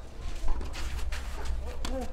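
Tennis ball struck by racket strings during a rally on a clay court: two sharp hits, the louder one about half a second in and another near the end.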